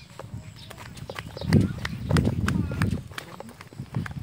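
Footsteps on a narrow concrete footpath, sharp slaps at an uneven pace, with a louder low rumble from about one and a half to three seconds in.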